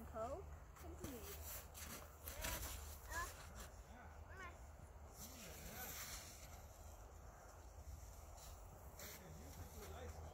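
Faint children's voices: brief murmurs and wordless sounds with gliding pitch, scattered through, with a few soft handling clicks and a steady low rumble underneath.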